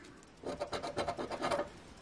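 A coin scraping the coating off a scratch-off lottery ticket in short, quick, uneven strokes, starting about half a second in.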